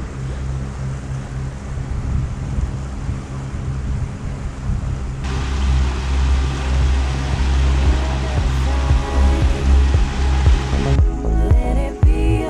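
A boat's engine drones steadily under wind and water noise as the catamaran motors along. From about five seconds in, background music comes in over it.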